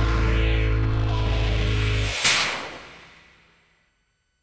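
The final bars of a band's song: the full band plays until about two seconds in and stops abruptly. A single sharp hit follows, then rings out and fades to silence.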